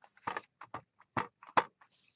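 Acrylic stamp block tapped repeatedly onto a jet black ink pad to ink a rubber stamp: a run of light, irregular clicks, about three a second, two of them louder a little past the first second.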